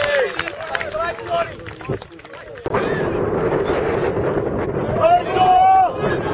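Players' voices calling out on an outdoor football pitch, then, after an abrupt change about two and a half seconds in, steady wind buffeting the camera microphone, with a loud shout near the end.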